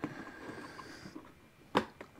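Faint rustling of equipment being handled, then a single sharp knock near the end as something is set in place.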